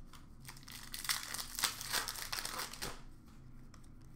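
Wrapper of a 2020-21 Upper Deck Series 1 hockey card pack crinkling and tearing as it is ripped open by hand, a run of crackles that peaks in the middle and eases off near the end.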